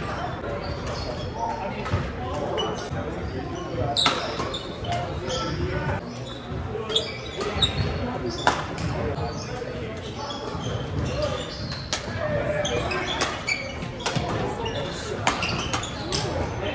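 Badminton rally: sharp racket strikes on a shuttlecock at irregular intervals, several seconds apart, echoing in a large hall over a wash of voices.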